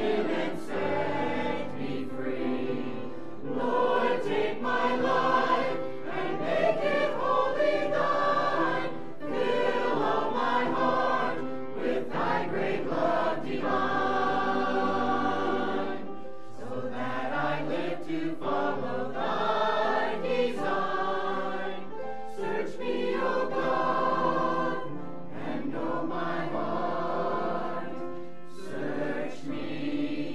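Mixed church choir of men and women singing a sacred song, in phrases of a few seconds each with short breaks between them.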